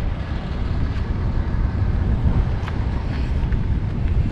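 Wind rumbling on the microphone: a steady low rumble and hiss with no distinct events.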